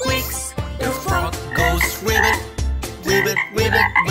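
Frog croaks repeated several times over a children's song's backing music with a steady beat.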